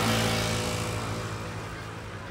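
Small motor scooter passing close by, its engine loudest about when it goes past and then fading as it moves away.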